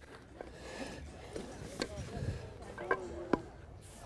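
Hands rummaging in a fabric equipment bag full of bats, with rustling and a few sharp knocks of bats against each other, under faint voices.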